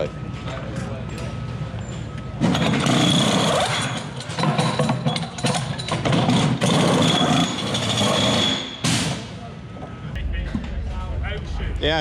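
Pneumatic wheel guns (rattle guns) run in bursts with a high whine as a pit crew undoes and tightens the wheel nuts in a race-car tyre change. They start about two seconds in and stop just before nine seconds. Near the end a low engine rumble comes in as the V8 Supercar pulls away.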